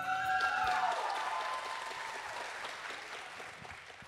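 Audience applauding, the clapping steadily dying away toward the end.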